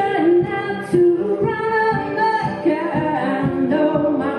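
A woman singing held notes while strumming an acoustic guitar in a steady rhythm, live.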